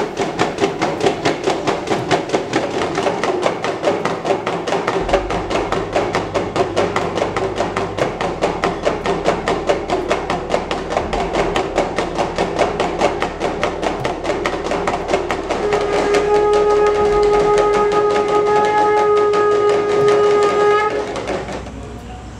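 Small hand drums beaten in a fast, steady rhythm for the aarti. About three-quarters of the way through, a conch shell (shankha) is blown in one long, steady note that stops a second before the end, while the drumming goes on.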